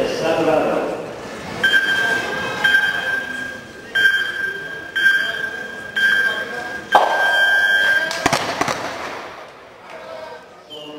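Electronic start-clock countdown for a track cycling team sprint: five high beeps about a second apart, then a longer final beep that sends the riders off. A brief clatter of sharp clicks follows just after.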